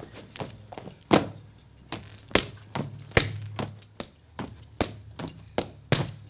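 Cretan pentozali dancers' percussive hand-and-boot strikes, landing sharply at an irregular rhythm: many lighter hits with about four loud ones spread through.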